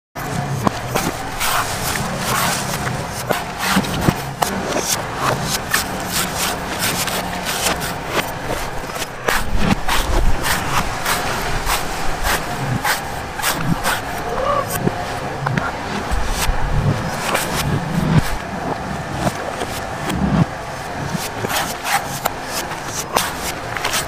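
Large knife chopping and shaving the husk of a young green coconut on a wooden chopping block: many short, sharp chops and scrapes in quick irregular succession, over steady background noise.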